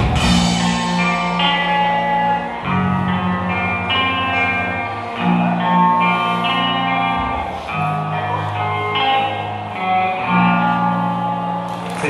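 Live alternative-rock band's electric guitars and bass holding slow, ringing chords that change every two to three seconds, with little drumming, as the song winds down to its close. A cymbal crash rings out at the start.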